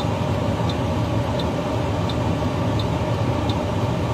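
Steady low rumble of a car heard from inside the cabin, with faint regular ticking about every 0.7 seconds.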